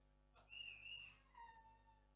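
A brief high-pitched whistling sound: a wavering tone, then two lower notes that slide down and fade, in otherwise near silence.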